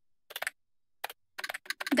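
Computer keyboard typing in short bursts of keystrokes, with a quick run of keys near the end.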